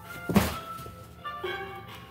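A single thump about a third of a second in, over steady background music.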